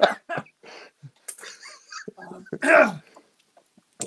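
A man coughing and clearing his throat in short, broken fits, with a louder strained voiced sound falling in pitch near the end: a coughing fit from something caught in his throat.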